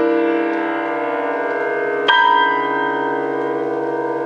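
Steinway grand piano: a held chord rings on, then a new chord is struck about two seconds in and left to ring, sounding bell-like.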